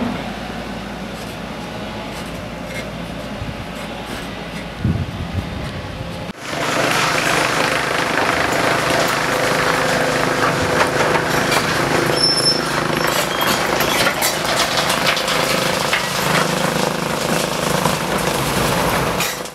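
Road-works machinery: a steady engine sound for about six seconds, then, after a sudden cut, a louder diesel crawler excavator running, with frequent clanks and scrapes.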